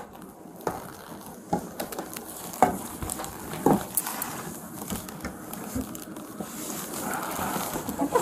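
Movement noise: scattered, irregular soft knocks and clicks over a low rustling.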